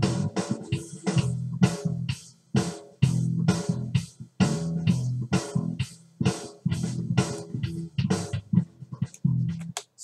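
Electric bass guitar riff playing back along with a programmed EZdrummer 2 drum beat in a steady rhythm of about three hits a second, the drums matched to the riff's tempo by Cubase's beat calculator.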